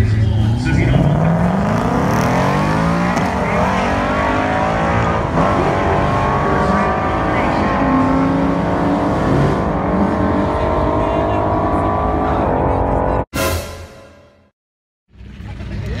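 A 2018 Ford Mustang GT's 5.0-litre V8 at full throttle on a drag-strip run. The engine note climbs and drops back through several upshifts as the car pulls away down the track. The sound cuts off abruptly about thirteen seconds in.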